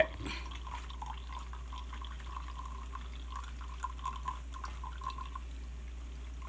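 Hot tea trickling and dripping through a paper coffee filter in a pour-over cone into a cup: a faint patter of small drips that thins out toward the end.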